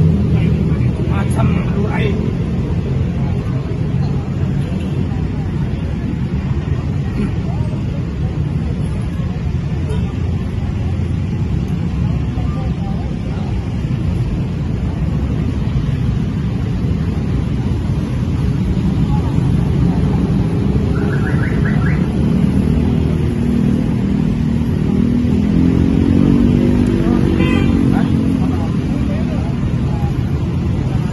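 Steady low rumble of road traffic and idling vehicles, with indistinct voices mixed in.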